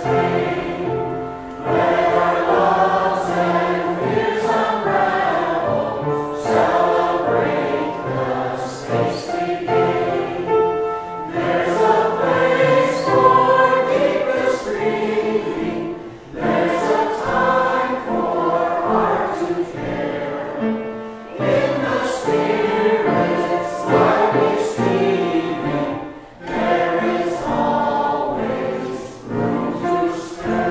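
A small mixed church choir singing a hymn together in sung phrases, with brief breaks between lines.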